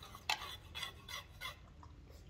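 A metal spoon clinking and scraping against a small steel pot as sauce is spooned out, with a few short, light clinks in the first second and a half.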